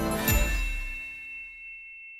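Logo-intro music sting ending on a bright chime with a low boom, about a third of a second in; the chime rings on and slowly fades.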